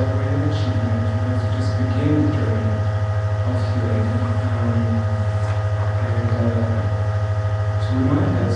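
A loud, steady low hum runs through the recording without a break. Above it, a faint, slow run of shifting notes comes and goes.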